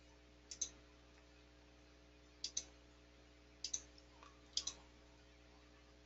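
Computer mouse clicked four times over a few seconds, each time a quick pair of sharp clicks, over a faint steady hum.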